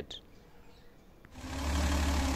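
Near silence for the first second or so, then a Mercedes M180 2.3-litre straight-six running at idle on its dual Solex carburetors comes in suddenly, a steady low hum.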